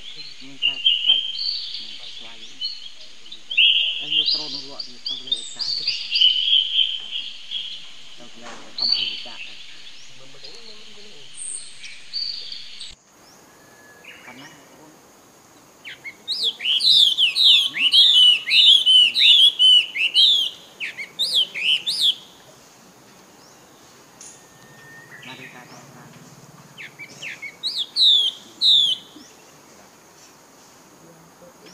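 Forest songbirds chirping and calling. About 13 seconds in the sound changes abruptly, and a bird then sings a fast run of repeated down-slurred whistled notes for about six seconds, with a shorter run near the end.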